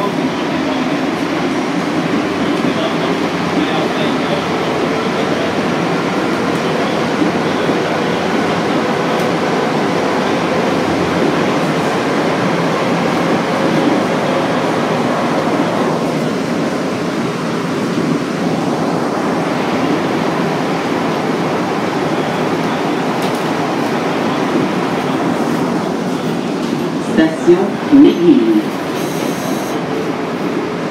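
Inside a 1966 MR-63 rubber-tyred Montreal metro car running through a tunnel: a steady loud rumble from the running gear, with a faint steady tone over it. Near the end a voice says "Attention" over the noise.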